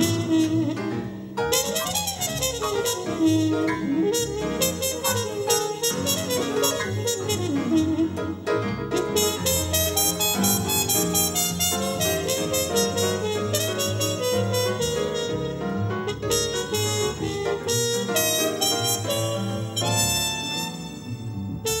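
Live jazz played by a trio: a trumpet leads over piano and double bass, with no pause.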